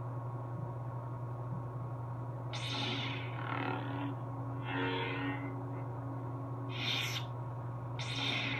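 Lightsaber's Verso soundboard playing a steady low blade hum through its speaker, with several short whooshing swing sounds as the lit hilt is moved.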